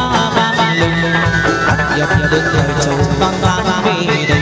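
Chầu văn ritual music: a plucked moon lute (đàn nguyệt) over a steady drum beat, with a long held note through the middle.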